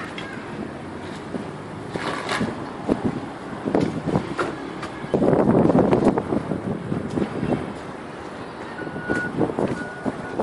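Trowel tapping on a spirit level laid across freshly set floor tiles to bed them level in the mortar: scattered sharp knocks over a steady background rumble, with a louder noisy stretch of about a second about five seconds in.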